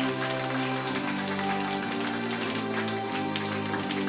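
Live funk band playing: held chords over a steady drum beat, the chord changing about a second in.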